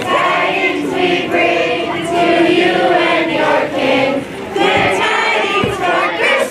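A large group of schoolchildren singing a Christmas carol together in unison.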